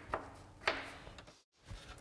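Two light knocks, about half a second apart, as a wooden board and plastic Versa Stops are set on a perforated project table, with a moment of dead silence shortly after.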